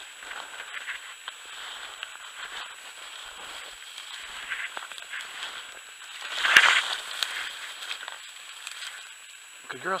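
Footsteps through snow-covered tall dry grass, with stalks brushing and crackling, and one louder rustle about two-thirds of the way through.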